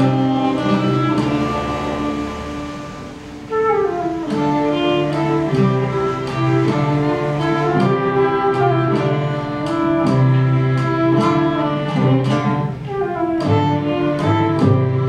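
Live acoustic folk ensemble playing a slow Celtic-style instrumental: violin and flute carry the melody over classical guitar and frame-drum beats. The music eases off about two seconds in, then comes back fuller with a rising run a little after three seconds.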